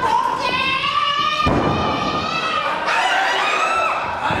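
A loud thud of a wrestler's body hitting the wrestling ring about one and a half seconds in, among sustained high-pitched shouting from the women wrestlers.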